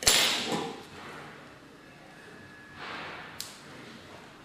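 A hand tool picked up from the table with a loud, brief clatter, then, near the end, a short scrape and one sharp click as a fiber stripper works on an optical fiber's coating.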